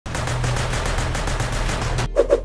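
Daewoo K1 carbine firing a rapid, unbroken string of shots that cuts off suddenly.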